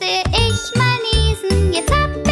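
Upbeat children's music: a chiming, bell-like melody over a steady bass beat.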